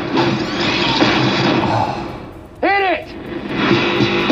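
Action film trailer soundtrack: a dense mix of vehicle and action effects that fades away about two seconds in, then a single short vocal cry, with music starting up near the end.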